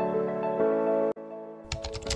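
Soft electric-piano background music that cuts off about a second in, followed by quieter music and a short run of keyboard-typing clicks near the end.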